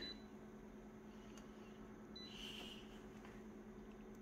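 Faint, steady copier hum with two short, high beeps from the copier's touchscreen as its keys are pressed, one at the start and one about two seconds in.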